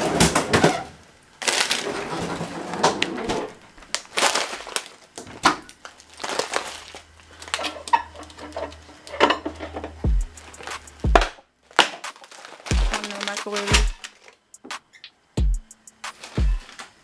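Rummaging in a freezer drawer among bags of frozen vegetables: irregular knocks and rustling, over music in the background. From about ten seconds in, deep bass drum hits that drop in pitch come in several times.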